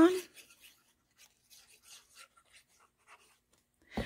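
Faint scratching and light rustling of a fine-tip glue bottle's tip drawn across die-cut cardstock, in short scattered strokes.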